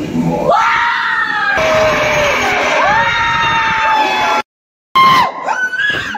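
People screaming in a haunted house: several long, high-pitched screams that rise and then hold, overlapping one another. About four and a half seconds in, the sound drops out completely for half a second, then shorter yells follow.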